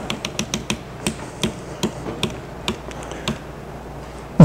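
A run of about a dozen sharp clicks and taps at an uneven pace, some close together and some nearly a second apart.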